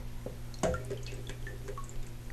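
Water splashing and then dripping back into a filled bathroom sink as a plastic Minion toy is lifted out, the toy waterlogged. One sharp splash comes a little past half a second in, followed by scattered drips.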